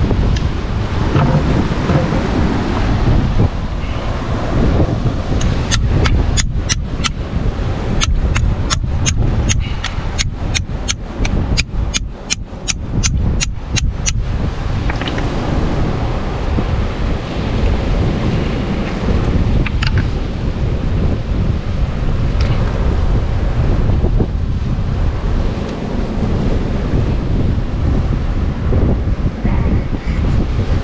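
Strong wind buffeting the microphone over the wash of surf on a rocky shore. In the middle comes a run of sharp clicks, about three a second, lasting several seconds.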